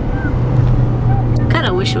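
Steady low road and engine drone inside the cabin of a moving Mitsubishi car. A woman's voice starts near the end.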